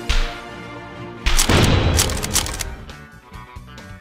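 Fight sound effects over a background music score: a sharp hit at the start, then about a second in a much louder crashing blast that lasts about a second and fades.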